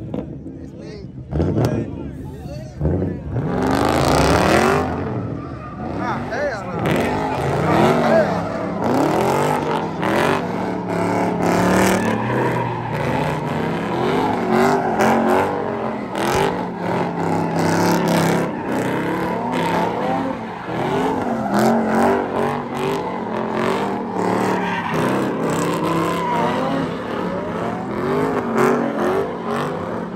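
A car's engine revving hard over and over, its pitch rising and falling again and again, with tyres spinning and squealing as the car does donuts. The sound grows louder about four seconds in. A crowd shouts close by.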